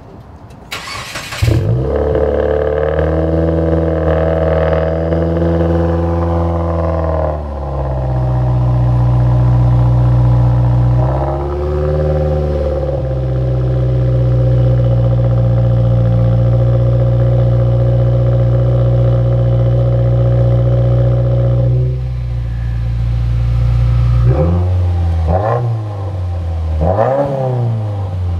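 2016 Subaru WRX turbocharged flat-four started through a FactionFab axle-back exhaust. The starter cranks briefly and the engine catches about a second and a half in, then runs at a raised idle. The idle settles lower about seven seconds in, with one brief rise and fall around twelve seconds, and holds steady. Near the end come a few quick throttle blips, each rising and falling.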